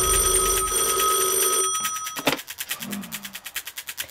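A steady high ringing tone for about a second and a half, then the bell of a red corded telephone ringing as a fast, even rattle of strikes.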